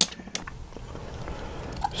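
A sharp click, then a second smaller one a moment later, followed by faint handling noise as an ink bottle and a blunt-needle syringe are handled to draw up ink.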